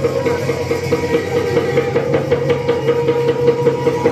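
Bhaona ensemble music: khol drums and other percussion played in a fast, dense, unbroken rhythm over a steady held tone.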